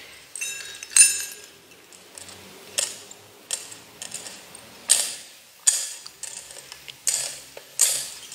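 Metal censer (thurible) swung on its chains during the incensing of the Gospel book, giving a series of sharp metallic clinks, mostly in pairs, about every one and a half to two seconds.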